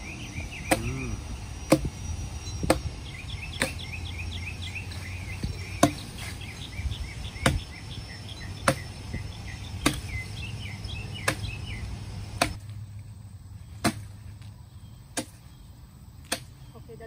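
Axe blows chopping into the wood of a felled tree, one sharp strike about every second, some landing harder than others. Birds chirp faintly behind the strokes, and a low background drone drops away about three-quarters of the way through.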